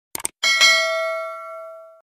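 Subscribe-button animation sound effect: a quick double mouse click, then a bell ding about half a second in that rings on and fades away over more than a second.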